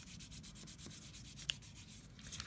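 A hand rubbing over paper freshly glued onto mat board, a faint quick run of rubbing strokes that press out bubbles and creases. A brief sharp high-pitched squeak cuts in about one and a half seconds in.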